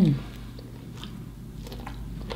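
A person chewing a mouthful of fast-food sandwich close to the microphone: faint, irregular wet smacks and clicks of the mouth, just after a hummed 'mmm' at the very start.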